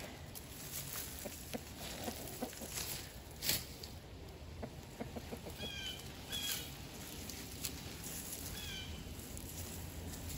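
Faint rustling and scraping of plant stalks and loose soil as dead pepper plants are cleared by hand from a raised bed, with a soft knock about three and a half seconds in. A few short chirping bird calls sound near the middle and again near the end.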